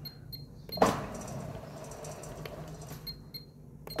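Sentry A6 Max sliding-gate motor making a short increment run during manual limit setup, driving the gate along its toothed rack toward the end stop. It starts with a sharp click about a second in, then hums steadily and fades out near the end.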